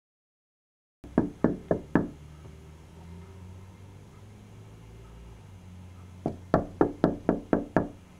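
Someone knocking on a door: four quick raps about a second in, then after a pause a longer run of about seven raps, roughly four a second, near the end. A low steady room hum sits between the two rounds.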